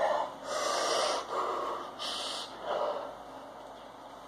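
A person taking a few sharp, hissing breaths through the mouth, the two strongest about half a second in and about two seconds in, from the burn of a spoonful of ghost pepper sauce.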